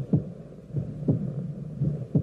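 Heartbeat sound effect: deep thumps that fall in pitch, about two a second, over a steady low hum.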